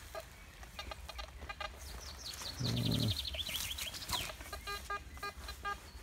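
Birds calling: a fast trill of a dozen or so falling high notes lasting about two seconds, starting about two seconds in, with a short low call partway through.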